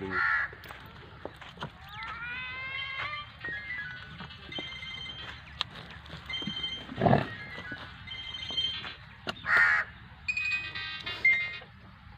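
A few crow caws, one near the start and one near the end, over a thin, faint melody of high tones and rising glides, with one low burst about seven seconds in.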